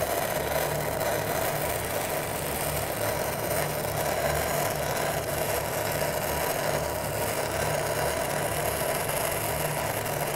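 Stick-welding (SMAW) arc from a 3/32-inch E6010 rod running the root pass on 2-inch schedule 80 carbon steel pipe: a steady, unbroken crackle and sputter.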